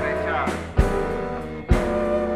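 Live band music: recorders and guitar over a sustained low bass line, with a loud drum hit roughly once a second.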